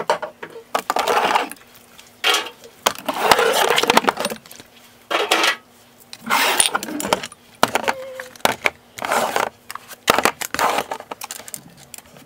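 Skincare spray and toner bottles clinking and clattering in irregular bursts as they are taken out of a drawer and set down, then small plastic organizer bins knocking against the drawer as they are fitted in.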